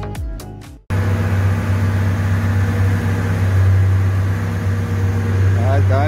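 Dance music that cuts off about a second in, followed by a Toyota AE111 Corolla's engine running at a steady speed on a chassis dyno, a loud, even low drone with no change in pitch.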